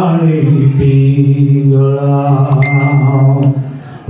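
A man chanting into a microphone in long, steady held notes, pausing briefly near the end before the chant resumes.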